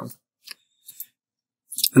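Computer mouse clicks: three short, faint clicks, one about half a second in and a quick pair about a second in.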